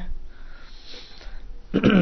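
A man drawing a breath in, heard as a soft hiss lasting about a second during a pause in his talk, before his voice resumes near the end.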